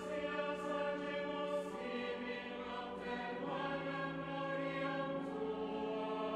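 Choir singing slow, sustained chords, moving to new chords about two and three and a half seconds in.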